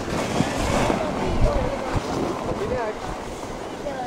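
Wind rumbling on the microphone, with a brief hiss of a snow tube sliding off across packed snow in the first second, and faint voices.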